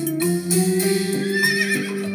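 A bright instrumental children's tune on electronic keyboard, with a horse whinny sound effect from about a second in to near the end.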